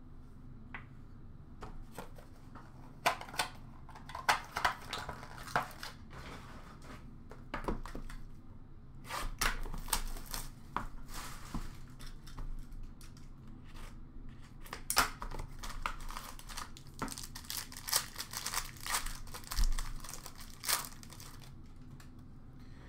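Hockey card packs crinkling and being torn open while cards and boxes are handled, making irregular rustles and small clicks and taps. The handling is sparse at first and grows busier about halfway through.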